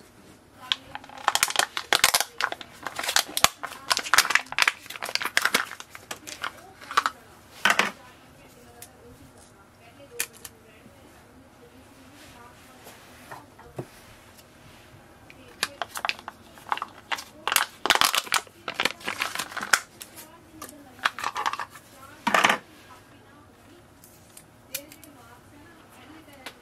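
Clear plastic packs of Canon 240 black and 241 colour ink cartridges being opened by hand: crackling and crinkling of stiff plastic in two spells, one over the first several seconds and another from about fifteen to twenty-two seconds in.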